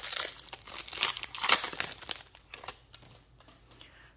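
Foil trading-card pack wrapper crinkling as it is torn open and pulled off the cards. The crinkling comes in several irregular strokes, loudest in the first two seconds, then fades to a few faint rustles and clicks.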